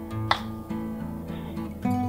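Background acoustic guitar music with held, plucked notes, and a single sharp click about a third of a second in.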